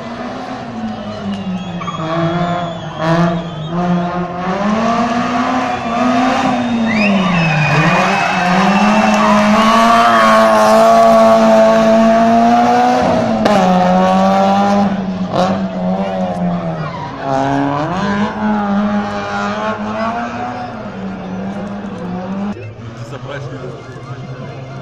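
Rally car engine approaching at speed and passing close by, revving up and dropping back repeatedly through gear changes. It grows louder to a peak near the middle and fades as the car drives away.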